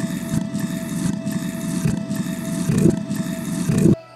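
Cartoon sound effect of wooden posts rising out of the ground: a steady, grinding rumble and scrape that stops abruptly near the end.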